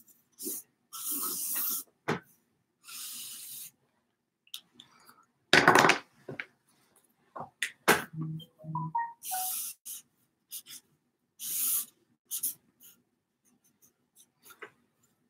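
Marker pen drawing on a flip-chart pad: a series of short scratchy strokes, a few of them squeaking briefly, with one louder, fuller burst a little before the middle.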